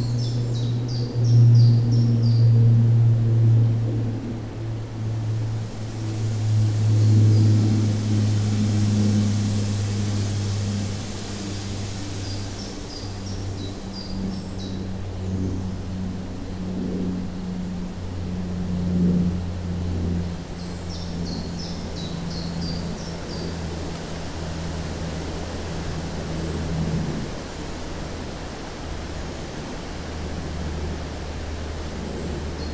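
A low, steady humming drone that slowly steps down in pitch, with short runs of high bird-like chirps near the start, about halfway through and again about three-quarters through. A soft high hiss swells in and out in the middle.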